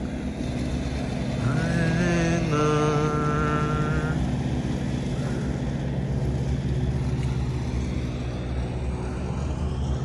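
Motor traffic: a vehicle engine running with a steady low hum, and a higher pitched engine tone from about one and a half to four seconds in.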